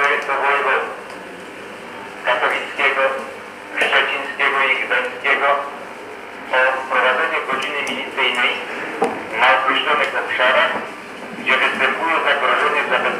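Indistinct speech: a voice talking in short phrases with brief pauses between them.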